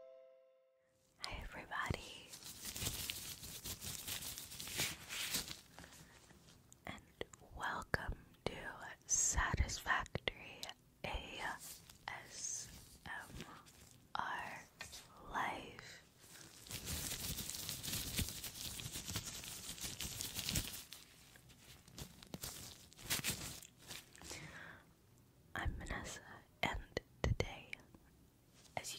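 Close-miked whispering, interleaved with the rubbing and crinkling of latex gloves near the microphone. The tail of a short music jingle fades out in the first second.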